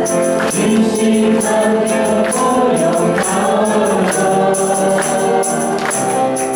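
Worship team of four singers with microphones singing a Taiwanese-language praise chorus in harmony over band accompaniment, with a steady high-pitched percussion beat.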